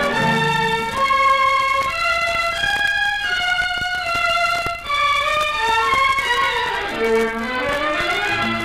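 Solo violin playing a flowing melody with runs and a swooping phrase near the end, over sparse orchestral accompaniment, from a 1946 radio broadcast recording.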